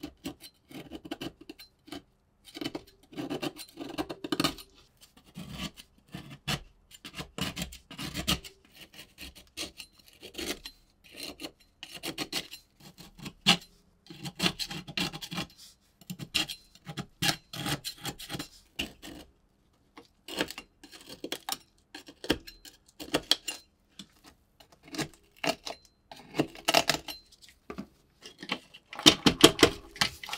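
Flat steel scraper scraping thick, flaking rust off the rusted tubular body of a 1920s kitchen scale: a crunchy scraping in repeated strokes with short pauses. Near the end the blade screeches like nails on a chalkboard.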